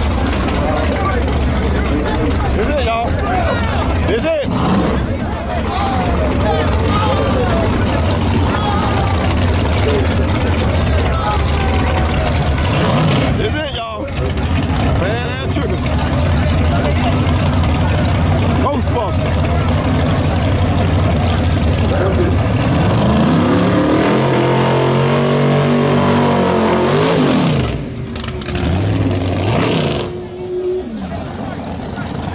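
Drag car engine running loudly amid a crowd's chatter, then about three-quarters of the way through it revs hard and launches down the strip, the pitch climbing and then falling away as the car pulls off.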